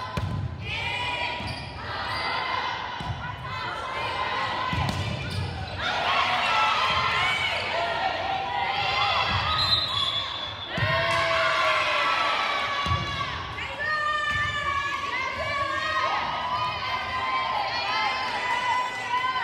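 Volleyball rally on a hardwood gym court: the ball thumping off a jump serve and a series of hits, with sneakers squeaking on the floor and players calling and shouting.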